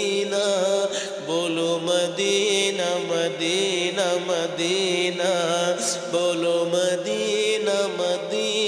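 A man singing an Urdu naat into a microphone, drawing out the word 'Madina' in long, ornamented, wavering lines over a steady drone.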